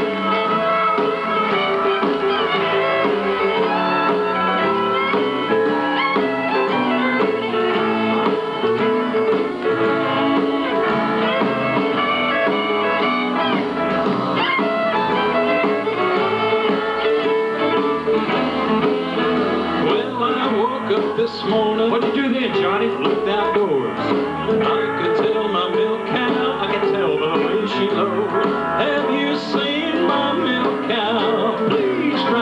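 Western swing band playing live, with fiddles and guitars over a drum kit.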